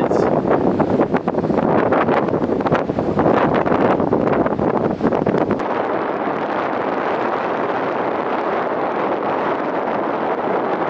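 Wind buffeting the microphone in gusts. About halfway through the sound changes abruptly to a steadier, duller rush of wind.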